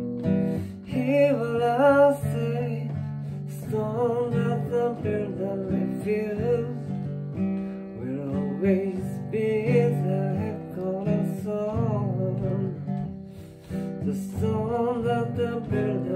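Acoustic guitar strummed in a reggae style, moving between G and C chords, with a man's voice singing along.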